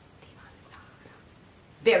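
A quiet pause with a few faint whispered voice sounds, then a woman's voice starts speaking near the end.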